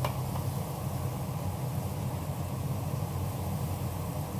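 Thick chicken stew boiling hard in a wood-fired iron pot: a steady, dense, low bubbling rumble.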